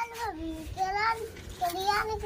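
A small child's high voice in drawn-out, sing-song vocalising, several long wavering notes with short breaks between them.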